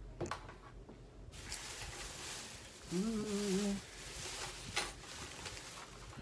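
Rustling of a bag and packaging as items are handled and put away, starting about a second in. A short hummed 'mm' from a man comes about halfway through, and a light click near the end.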